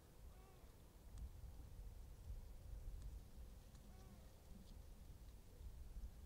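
Near silence: a faint low rumble, with two faint, distant arching animal calls, one about half a second in and one about four seconds in, and a few soft ticks.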